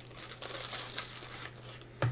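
Thin plastic packaging crinkling and rustling as it is handled and pulled open, over a steady low electrical hum.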